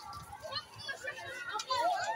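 A crowd of children chattering and calling over one another, with one louder call near the end.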